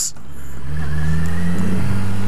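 Yamaha XJ6 motorcycle's inline-four engine accelerating, its pitch rising steadily as the revs climb.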